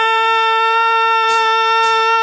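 A male singer holds one long, high sung note with a slight vibrato.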